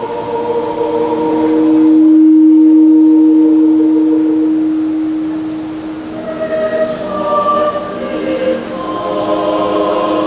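Mixed student choir singing in parts. A long held chord swells to its loudest and fades, then the voices move on together into new notes.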